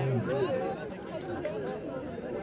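Spectator crowd chattering: many voices talking over one another, none of them clear.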